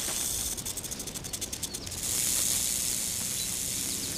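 Rattlesnake rattling: a fast run of dry high clicks that turns about two seconds in into a steady high buzz.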